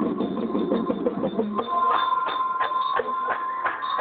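Marching band playing: steady drum strokes about three a second under a held note, with the lower part thinning out about a second and a half in.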